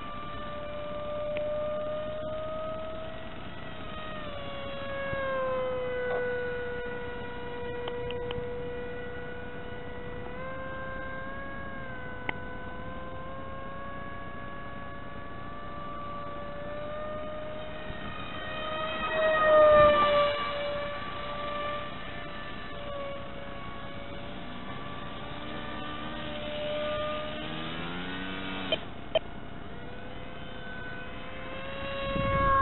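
Small brushless electric motor (2205 2300Kv) spinning a 5045 two-blade propeller on an RC plane in flight: a steady whine whose pitch drifts up and down with the throttle and swells loudest about two-thirds of the way through. Two sharp clicks come near the end.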